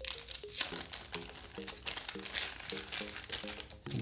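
Plastic wrap crinkling in quick, irregular crackles as it is peeled off by hand and a clear plastic bag is pulled away.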